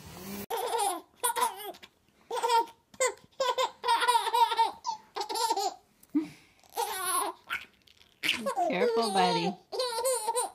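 A baby laughing in a string of short, high-pitched bursts of giggles.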